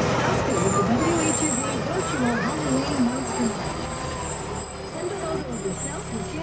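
A diesel fire engine running on the road, with a person's voice talking over the vehicle noise.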